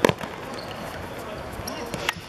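A football kicked hard, a sharp thud right at the start, with a second, lighter knock near the end.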